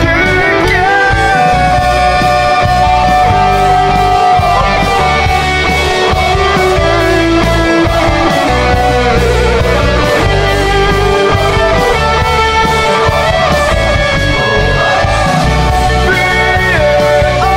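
Rock song in an instrumental stretch: a lead electric guitar melody with long held notes over a steady drum beat and bass.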